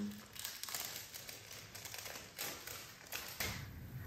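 Faint, scattered light clicks and rustles of small buttons and their small crinkly plastic bags being handled.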